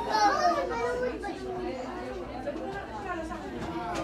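A young child's voice, high-pitched just after the start, then continued babble and chatter of voices with no clear words.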